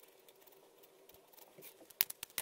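Near silence: quiet room tone, with a few faint light ticks near the end.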